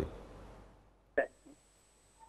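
A pause on an open call-in telephone line: near silence, broken about a second in by one short, clipped vocal sound from the caller's line and a fainter blip just after.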